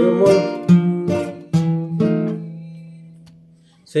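Nylon-string acoustic guitar strummed through a chord progression with a thumb pick: several quick chord strums in the first two seconds, then one chord left ringing and slowly fading away before the next strum near the end.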